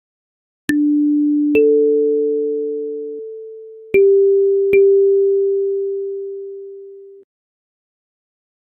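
Kalimba playing four plucked notes, D4, A4, G4 and G4, about a second or two apart. Each starts with a click and rings with a clear, nearly pure tone that fades slowly. The last note is cut off sharply about seven seconds in.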